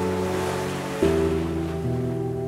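Slow, soft piano music, a new chord struck about a second in, mixed over the wash of ocean waves breaking on a shore.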